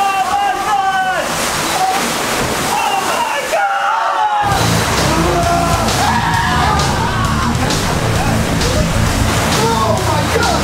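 People screaming as thousands of water balloons slosh and tumble around them in the back of a moving truck. About halfway through, background music with a steady beat comes in underneath.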